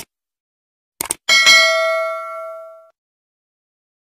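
Subscribe-button sound effect: two quick mouse clicks about a second in, then a single notification bell ding that rings out and fades over about a second and a half.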